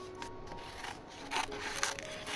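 Cardboard tea box being handled and opened by hand, giving a few short rustling scrapes, the loudest near the end, over soft background music.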